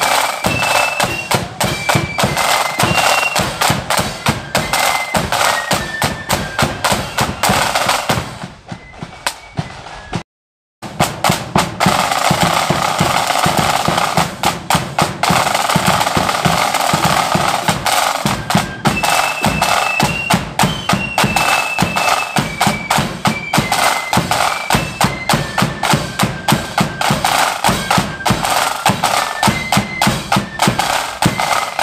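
Marching flute band playing: a high unison flute melody over rapid snare drum strokes and bass drum beats. The music dips and cuts out for a moment about ten seconds in, then comes back with the drums strongest before the flute tune is heard clearly again.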